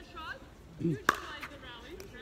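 A pickleball paddle striking a plastic pickleball once: a single sharp pop about a second in.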